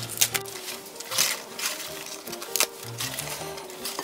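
Background music, over a few short crisp rustles and snaps of spinach leaves being torn by hand in a glass bowl.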